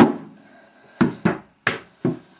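A ball of Space Putty thrown onto wooden floorboards: one sharp smack as it lands, then a few more knocks about a second later as it bounces away.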